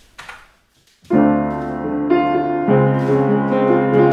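Yamaha U30 upright piano playing itself back through its Disklavier system. The chords enter about a second in and change twice, with an edited top F, its MIDI velocity lowered by 20, now sitting just above the chords.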